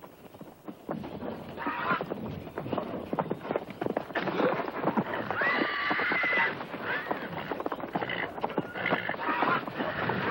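Horse whinnying several times, with the longest call about halfway through, while its hooves stamp and knock on the stall's dirt floor.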